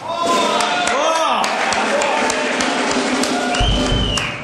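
Drum roll on a drum kit under shouting and whooping voices, ending in a loud bass-drum and cymbal hit near the end.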